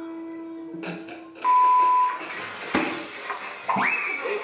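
Edited TV variety-show soundtrack: a held musical note, then a loud short steady beep about a second and a half in, a sharp click a little later, and a quick rising swoosh near the end.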